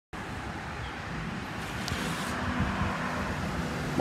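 Outdoor background noise of road traffic: a low, steady rumble that grows slightly louder.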